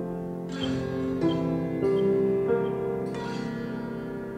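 Instrumental music: a prepared piano plays five evenly spaced single struck notes with a bright, plucked-sounding edge, over held organ tones.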